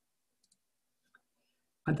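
Near silence with two faint, short clicks, then a man's voice starts speaking right at the end.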